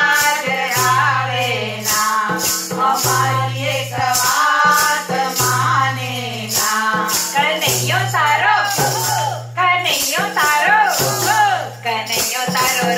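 A group of women singing a Gujarati devotional bhajan in unison, keeping time by shaking hand-held wooden clappers with metal jingles (kartal), about two jingling strokes a second, over a steady low sustained accompaniment.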